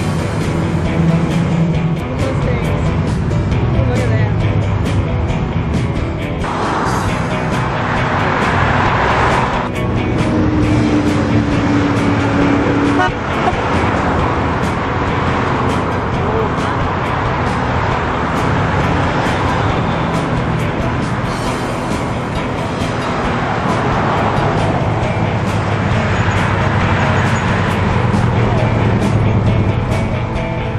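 Cars driving past on a wide road, their passes swelling and fading, mixed with music and some voices. About a third of the way in, a car horn sounds one steady note for about three seconds.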